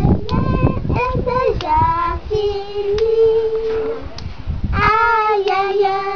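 Children singing a song together, with long held notes, two of them lasting over a second each.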